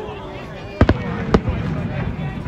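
Aerial fireworks shells bursting: a quick double bang a little under a second in, then a single sharp bang about half a second later.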